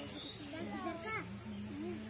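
Several voices of women and children talking over one another, with no single clear speaker.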